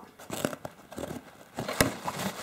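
A cardboard parcel box being opened by hand, with tape tearing and cardboard flaps and packing rustling and crackling irregularly. There is a sharp snap near the end.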